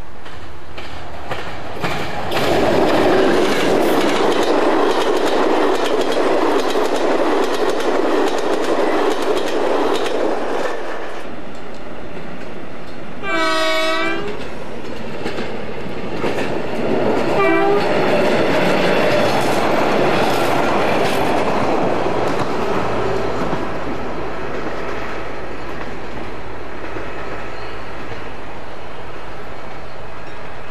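Irish Rail diesel trains passing at speed: a loud rumble with wheels clicking over rail joints for about nine seconds. Then a GM diesel locomotive sounds its horn, one blast of about a second and a short one a few seconds later, and rumbles past.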